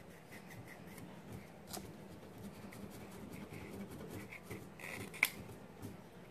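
Masking tape being pressed and smoothed onto a small piece of wood by the fingers: faint crinkling and rubbing with many small ticks, and one sharper click about five seconds in.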